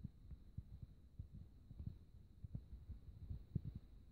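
Faint handling noise: irregular soft low thumps, several a second, over a faint steady high tone.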